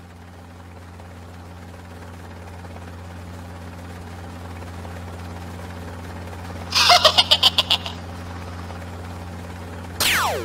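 Cartoon flying-craft sound effect: a low, steady engine hum that grows gradually louder. About seven seconds in, a loud rapid burst of about nine sharp, rattling pulses lasts about a second.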